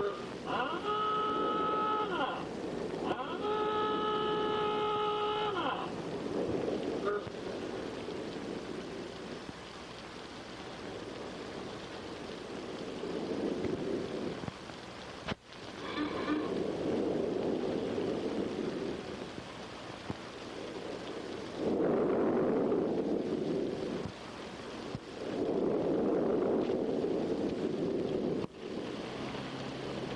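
Car horns sounding three long, steady blasts in the first six seconds. Then a rushing noise like rain and running cars, which swells and fades about four times.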